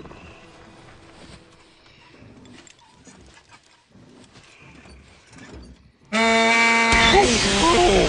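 After about six seconds of hush, a loud tow-truck horn honks once, held steady for about a second. It is followed at once by the startled farm tractor's engine sputtering and a wavering, bleating cry.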